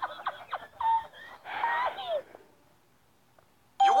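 A man's fits of high-pitched, uncontrollable laughter with a thin, tinny sound like old broadcast audio, lasting about two seconds and then stopping. Near the end a voice and a steady chime begin.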